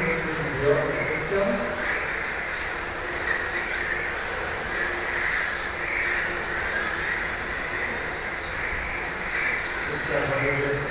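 Several 1:10 electric RC touring cars with 17.5-turn brushless motors racing: high, thin motor whines that rise and fall as the cars accelerate and brake, over a steady rushing hiss.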